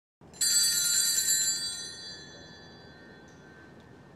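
A small high-pitched bell struck once, ringing out and fading away over about two seconds, signalling the start of Mass.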